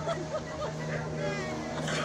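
People talking over a steady, low droning hum.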